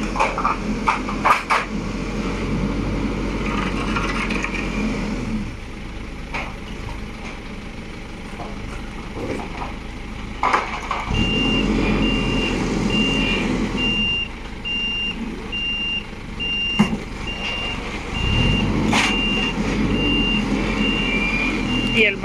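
Merlo telehandler's engine running and revving as it works the pallets off the trailer, with scattered metallic knocks. About halfway through its reversing alarm starts, beeping steadily about one and a half times a second.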